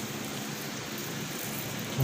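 Steady, even background noise with no distinct event: room noise of a large hall.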